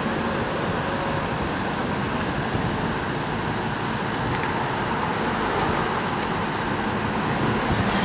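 Steady road and engine noise heard from inside the cabin of a car driving along a town street.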